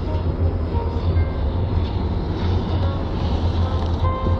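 Steady low rumble of engine and tyre noise heard inside a car's cabin while driving along a highway.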